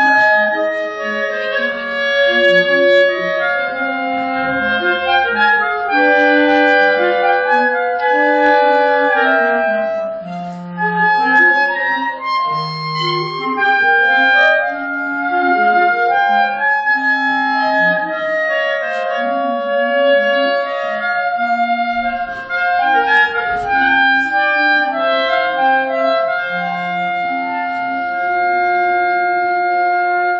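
Clarinet quartet playing: four clarinets in harmony, sustained notes and moving lines, settling into a long held chord near the end.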